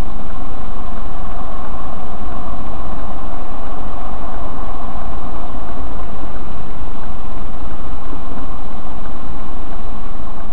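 Loud, steady vehicle engine and road noise that holds unchanged throughout, with no impacts or breaks.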